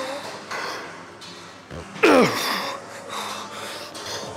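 A man breathing hard through a set of seated cable rows. About two seconds in comes one loud effort grunt that drops sharply in pitch as he pulls the weight.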